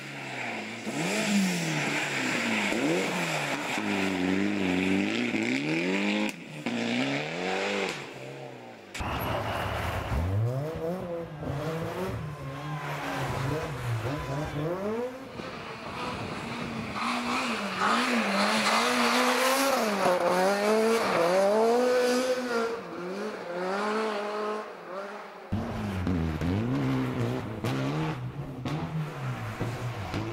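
Rally car engines revving hard, their pitch climbing and dropping again and again through gear changes. There are three separate passes one after another.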